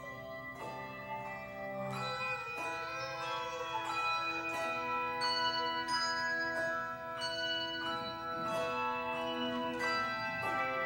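Handbell choir ringing a piece: chords of several tuned handbells struck together every half second to a second, each left to ring on into the next.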